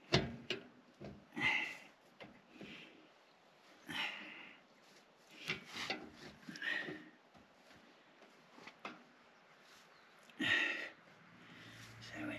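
A van's hand-cranked jack being wound up under a trailer as it takes the load: faint, irregular scrapes and clicks from the crank, mixed with short breaths from the man turning it, coming about every second or so.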